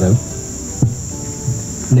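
Steady high-pitched chorus of insects, such as crickets, with a single knock just under a second in from a handheld microphone being handled as it is passed.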